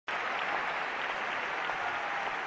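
Steady audience applause, an even wash of many hands clapping, continuing for an encore after a successful performance.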